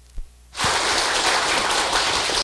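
Audience applauding, starting about half a second in and holding steady, after a soft knock just before.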